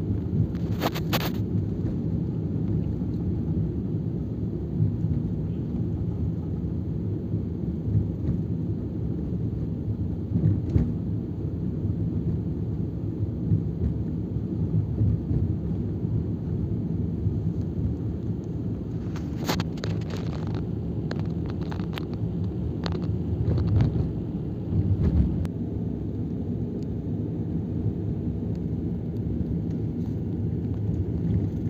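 Steady low rumble of a vehicle driving, the engine and road noise heard from inside the cabin, with a few sharp knocks and rattles. There is one knock about a second in and a cluster of them about twenty seconds in.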